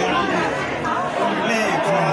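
A man speaking into a microphone over the chatter of a crowd of voices.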